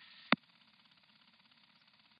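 Faint radio hiss that ends with a single sharp click about a third of a second in as the transmission cuts off, followed by near silence.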